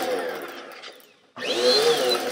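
Dirt Devil Dynamite 2 Cyclonic upright vacuum cleaner running, then winding down and stopping about a second in. It starts up again half a second later, its high whine rising as the motor spins up.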